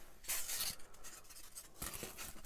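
Foam wing cores scuffing and rubbing against each other and the hands as they are handled: a soft scrape in the first second, then fainter rustling.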